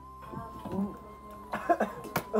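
A person's voice with short, loud cough-like bursts about one and a half seconds in, over background music with a steady held tone.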